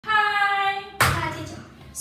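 A voice holds one sung note for about a second. Then comes a single sharp hand clap, with a voice sounding under it and fading away.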